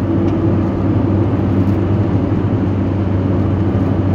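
Car being driven, a steady low drone of engine and tyre noise heard from inside the cabin.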